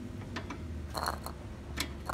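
A few irregular light metallic clicks from a screwdriver working the star-wheel adjuster of a 1969 Chevy C10 front drum brake through the backing-plate slot. The adjuster is being backed off to pull the shoes in, because the drum won't come off.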